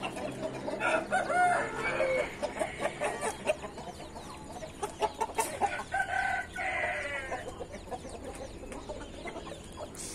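A chorus of Índio game roosters and young cockerels crowing, the crows overlapping, with chickens clucking among them. Two crows stand out, one about a second in and one past the middle.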